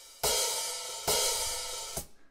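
Sampled acoustic open hi-hat from an Abbey Road 70s vintage drum kit, struck twice from a drum-machine pad, each hit ringing out in a long bright wash. Right at the end the ringing is cut off abruptly, as a closed hi-hat in the same choke group chokes the open one.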